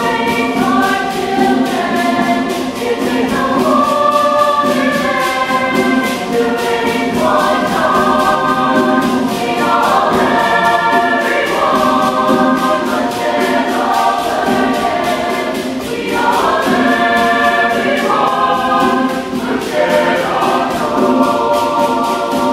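Mixed chamber choir singing in several parts, voices moving over a sustained low note.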